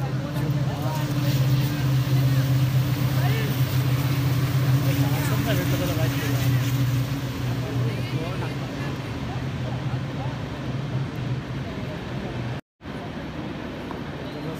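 Steady low engine drone under the distant shouts and chatter of players and onlookers. The drone ends at a brief silent gap near the end.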